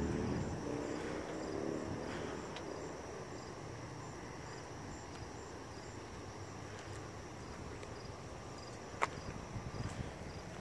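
Faint outdoor ambience: insects chirping in short, evenly spaced pulses over a low steady hum, with a sharp click about nine seconds in.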